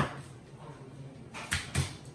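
Frozen beeswax bars knocked out of a plastic mold and dropping onto the counter: one sharp knock at the start, then two more about a second and a half in, a quarter second apart.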